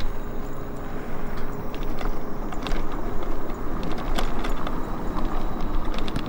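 Steady wind and road rumble while riding a small vehicle across pavement, with scattered light clicks and rattles.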